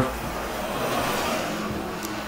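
A car passing by on the street outside: an even rush of road noise that swells a little and then fades over about two seconds.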